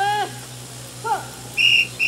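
Two short distant voice calls, then a steady high-pitched whistle blast near the end that breaks for a moment and carries on.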